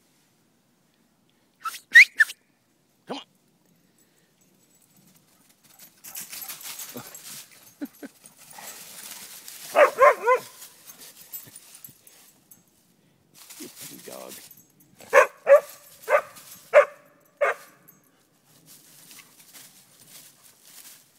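Dogs barking in short bursts: a few sharp, high yips about two seconds in, a loud cluster of barks around the middle, and a run of five barks about half a second apart near the end.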